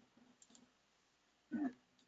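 A few faint clicks of work at a computer in the first half second, then silence, and a short vocal sound, a brief voiced 'uh' or breath, about one and a half seconds in.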